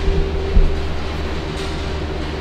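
Steady low machine hum with a faint steady tone above it and one short thump about half a second in.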